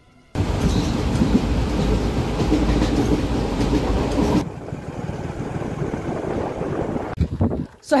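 Passenger train running at speed, heard at an open carriage doorway: a loud rushing rumble starting suddenly and then dropping sharply to a quieter steady noise about four seconds in. Voices come in near the end.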